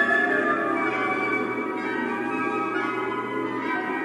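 Symphony orchestra playing: a dense, steady texture of many held tones sounding together.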